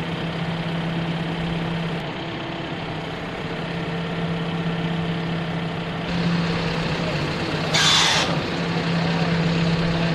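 Heavy military truck diesel engine idling with a steady low hum. About eight seconds in there is one short, loud hiss of air.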